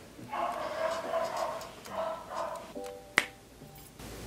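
A phone alarm tone playing, then a single sharp finger snap about three seconds in.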